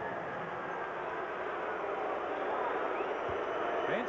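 Basketball arena crowd cheering, a steady even din.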